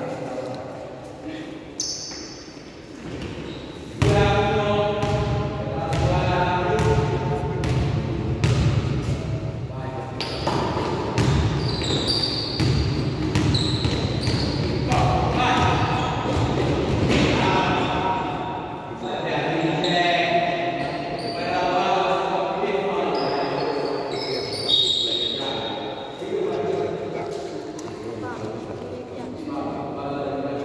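A basketball is dribbled and bounces repeatedly on a gym floor during play, in a large echoing hall. Voices call out over it throughout.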